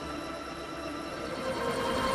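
Steady machine hum of a running UV accelerated-weathering chamber: a drone of several steady tones over a noise bed, growing a little louder toward the end.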